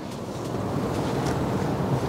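Steady low rushing of wind on the microphone, growing slightly louder.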